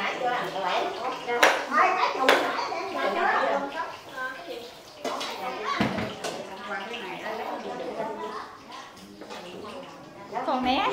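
People talking with children's voices among them, with two sharp knocks about a second and a half and two seconds in.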